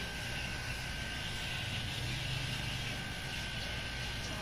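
Corded electric hair clippers buzzing steadily during a haircut.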